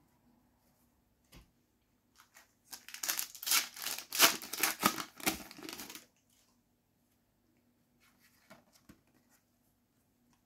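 Foil trading-card sachet (Panini FIFA 365 Adrenalyn XL pack) being torn open and crinkled by hand: a dense run of crackling lasting about three seconds in the middle. A few faint clicks come before and after it.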